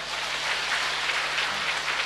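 Audience applauding: a steady spread of many hands clapping.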